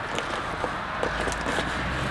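Cardboard box flap and packing tape being pulled and torn open by hand, a rustling, scraping noise with a few small clicks. A low rumble joins about halfway through.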